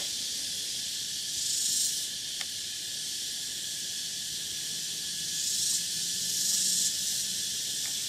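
Steady high-pitched insect chorus of the tropical forest, a continuous hiss that swells louder a few times.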